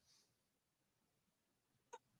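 Near silence: room tone, with a faint short hiss at the start and one brief faint click near the end.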